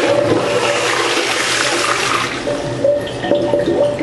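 Toilet flushing: a loud rush of water for about two seconds, easing into gurgling and trickling as the bowl drains and refills.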